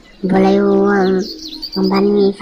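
A voice holding one long, steady vowel for about a second, at the same pitch as the surrounding talk, then syllables start again near the end.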